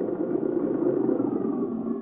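Radio-drama sound effect of a motor vehicle's engine running as the vehicle arrives, with a faint whine falling in pitch in the second half.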